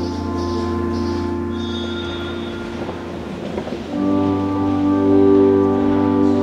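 Organ playing slow, sustained chords, with a new and louder chord coming in about four seconds in.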